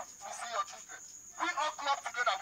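A voice speaking, falling away for about a second and starting again about one and a half seconds in, over a steady high whine.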